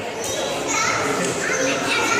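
Background voices of children talking and calling out, with other visitors' chatter.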